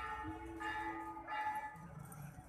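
Bell-like chimes, struck three times about two-thirds of a second apart, each ringing on briefly over a low street murmur.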